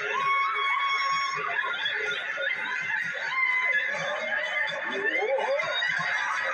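Studio audience laughing, with dance music playing underneath.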